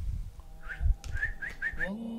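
Low rumbling knocks of a handheld camera being moved, then a quick run of about five short rising whistle-like chirps in the second half.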